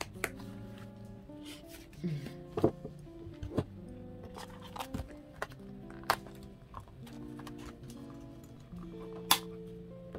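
Soft background music of slow sustained chords, with a handful of sharp taps and knocks from a wallet and a plastic ring binder being handled on a table, the loudest about nine seconds in.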